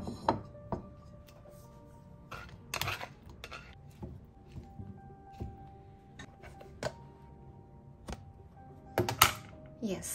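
Soft background music with long held notes, under scattered knocks and clinks of a ceramic bowl being set on a counter and filled with cooked potato and zucchini pieces. The loudest clatter comes about nine seconds in.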